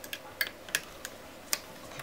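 A handful of light, sharp clicks and ticks at irregular spacing: a small hand tool and plastic parts clicking as they are worked at the edge of an LCD panel's backlight and diffuser stack.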